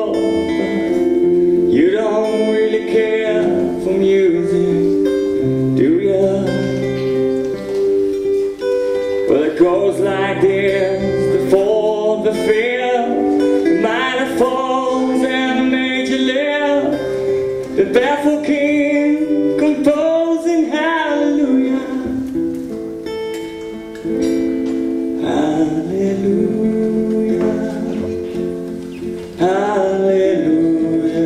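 A man singing a slow song to his own acoustic guitar, live: long held notes with vibrato over steady strummed and picked chords.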